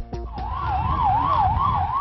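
Emergency-vehicle siren wailing in a fast up-and-down sweep, about three sweeps a second, starting about half a second in. The last notes of music cut off just before it.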